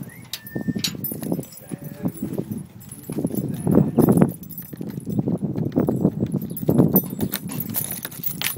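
Footsteps on pavement and the rustle of a handheld phone as someone walks up to a front door, in irregular clusters of low knocks. A brief high squeak sounds about half a second in, and a bunch of keys jingles near the end.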